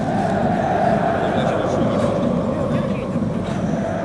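Stadium ambience from the stands: indistinct voices over a steady hum that sinks slightly in pitch.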